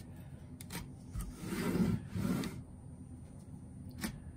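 Handwork on a pine strainer stick: a speed square set against the wood with a few light clicks, then two short scraping rubs as the pen marks the wood and the square slides on the paper-covered bench.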